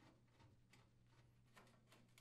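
Near silence: a faint steady hum with a few faint, scattered clicks.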